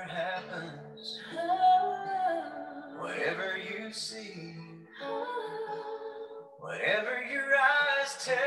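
A worship song playing: a voice singing phrases over an instrumental accompaniment.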